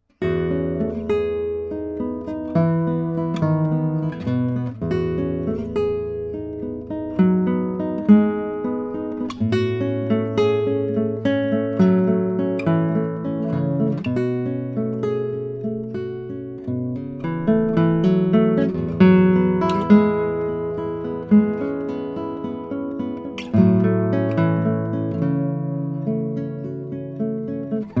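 Solo nylon-string classical guitar fingerpicking arpeggiated chords over held bass notes, starting right at the beginning.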